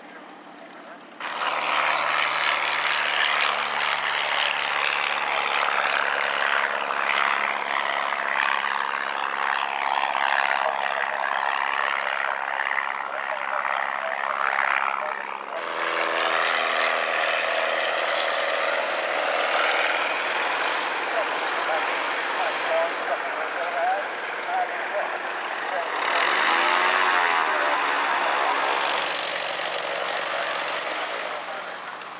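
Single-engine piston propeller aircraft running at high power, loud and steady with a low engine drone. The sound changes abruptly about halfway through to another propeller plane. Near the end a plane passes close overhead, its tone sweeping as it goes by.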